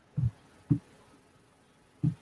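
Two soft, low thumps about half a second apart.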